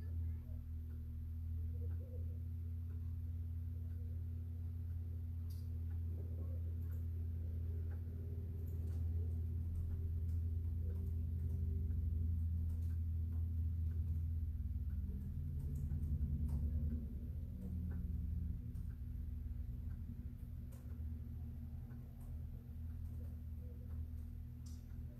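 A low, steady hum that comes in at the start, stays strongest for about the first eighteen seconds and then eases off, with faint scattered ticks and clicks over it.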